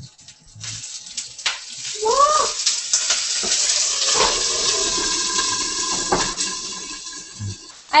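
Water poured into a hot oiled skillet of frozen pan-fried dumplings (mandu), setting off a sizzling, spitting hiss that builds about two seconds in and holds steady as the water turns to steam to steam-fry them. A few clinks as a glass lid is set on the pan, and a short exclamation about two seconds in.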